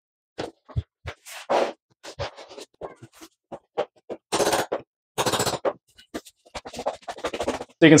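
Laminate floor planks being handled and pressed into place by hand: a scattered series of short clicks and knocks, with a few longer scraping sounds as the boards slide on the floor.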